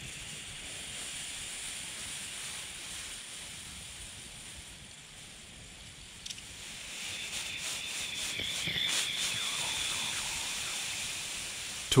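Steam hissing out of the vent hole in a mason jar's lid, pushed up from water boiling in the copper coil in the fire. It eases off around the middle, then comes back stronger with a faint high whistle. This is the sign that the water has turned to steam and can no longer circulate as liquid.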